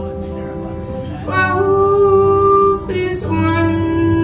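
A woman singing live with acoustic guitar accompaniment. The guitar plays alone at first; about a second in her voice enters on a long held note, breaks off briefly near three seconds, then holds another note.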